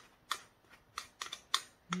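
Wooden spoon scraping and tapping inside a small ceramic bowl, making a quick series of light clicks, a few a second.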